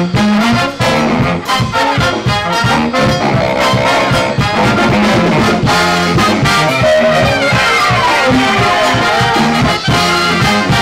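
Live brass band of trumpets, trombones, tenor and baritone saxophones and drum kit playing an upbeat tune with a steady beat. The horns play a falling run a little after halfway.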